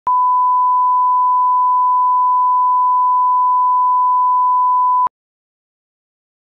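Broadcast line-up test tone: a single steady 1 kHz sine tone played with colour bars. It lasts about five seconds and cuts off suddenly.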